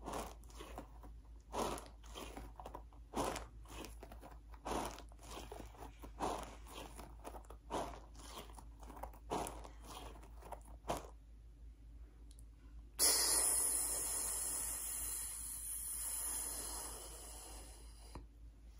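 The squeeze bulb of a blood-pressure cuff is pumped a dozen or so times, about once a second, to inflate the cuff. After a short pause the release valve is opened about 13 seconds in, and air hisses out steadily, fading over about five seconds as the cuff deflates.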